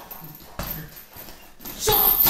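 Gloved punches landing on a hanging uppercut bag: a couple of short thuds, the clearest about half a second in and near the end.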